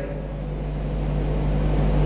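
A steady low hum with a faint steady tone above it, slowly growing louder, during a pause in speech.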